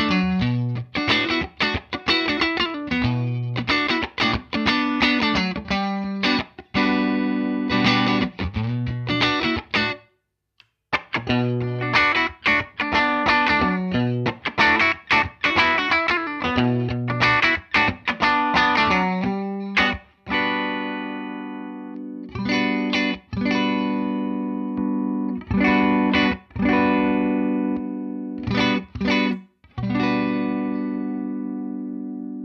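Fender American Professional II Telecaster with a roasted pine body, played solo: a rhythmic picked riff that stops dead for about a second at around ten seconds in, then resumes. From about twenty seconds in it gives way to ringing chords struck a few at a time and left to sustain.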